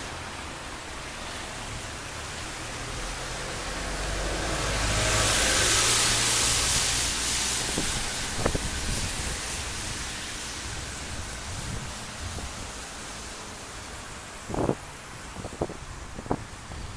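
A car driving past on the street, its tyre and engine noise swelling to a peak about five to seven seconds in and then fading away. A few short knocks come near the end.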